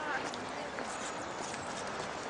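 Footsteps of someone walking on a paved path, with people's voices in the background.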